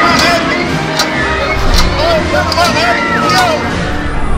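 Music playing over a crowd of voices, with repeated short cries and shouts from people on a spinning amusement ride.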